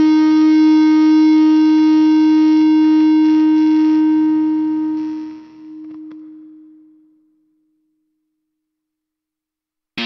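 Starcaster electric guitar played through a Boss IR-200 amp and cabinet simulator: one held note rings on steadily and evenly. It fades about five seconds in and dies away to silence by about seven seconds in.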